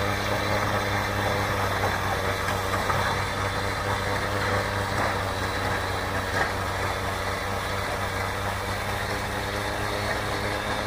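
Battery-powered, remote-controlled snow blower running steadily under electric power, with no gas engine. Its motor hums with a steady pitch while the auger and chute throw snow.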